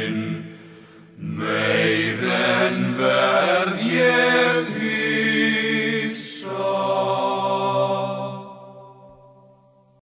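Icelandic tvísöngur: two voices singing a folk drinking song in parallel fifths. After a short breath they sing the last phrases, then hold a long final note together that fades away.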